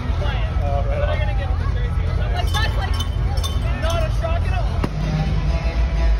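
Ice hockey arena ambience during pre-game warm-ups: a loud steady low rumble under voices and music in the arena, with a few sharp cracks of pucks being shot.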